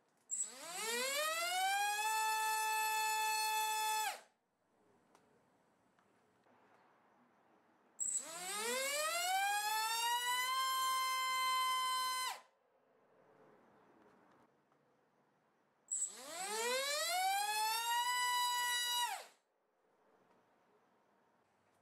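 Brushless 2204-size 2950KV FPV racing motor spinning a 5-inch two-blade propeller on a thrust stand, three times in a row. Each run opens with a short click, then a whine rises in pitch for about two seconds, holds steady, and cuts off sharply.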